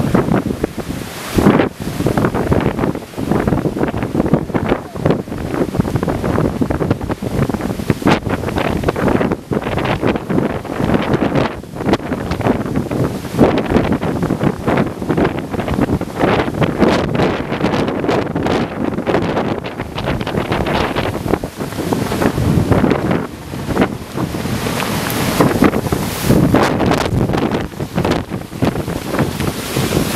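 Strong, gusty thunderstorm gust-front wind buffeting the camera microphone, loud throughout and surging and easing from moment to moment.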